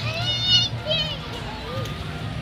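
A young child gives two short, high-pitched excited calls in quick succession in the first second, the first the louder, over steady background music.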